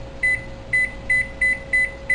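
Electric range's touch control panel beeping once per button press as the burner setting is stepped up: about seven short, same-pitched beeps, two to three a second, over a faint steady hum.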